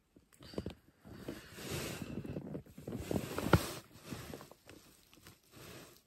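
Rustling of nylon sleeping-bag and tent fabric as a person shifts and turns over in a sleeping bag, in uneven spells with short pauses and a sharp knock about three and a half seconds in.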